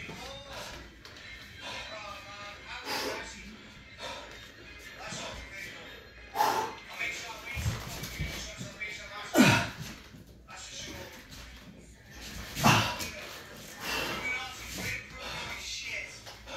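Speech and music playing in the background, likely from a stream. Three loud, brief sounds stand out about six and a half, nine and a half and twelve and a half seconds in.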